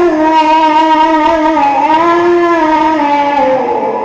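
A man reciting the Quran in the melodic mujawwad style, holding one long drawn-out note through the microphone; the pitch wavers about halfway and falls near the end.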